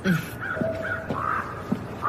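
A bird calling, several short calls in a row.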